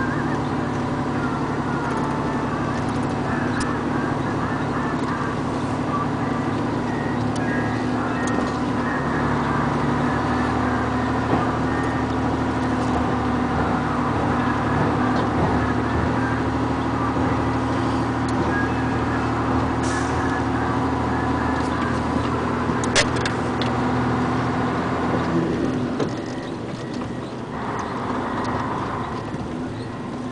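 A vehicle engine running steadily while driving, heard from on board as an even, deep drone; it eases off and gets quieter a little before the end. One sharp click stands out a few seconds before that.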